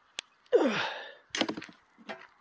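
A man sighing: a breathy exhale that falls in pitch and fades, after a single short click, with a few light clicks following.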